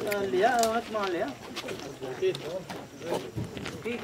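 Indistinct voices talking, clearest in the first second or so and quieter after.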